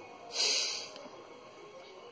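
A man's single forceful breath out, a hissing rush of about half a second, as he empties his lungs at the start of bahya pranayama.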